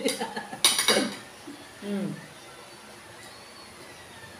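Brief talk and laughter, a clink of a table knife against a plate, and a short hummed "mm", then quiet room tone.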